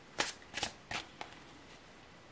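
Tarot cards handled as a card is drawn from the deck: four quick papery flicks in the first second or so, then quiet handling.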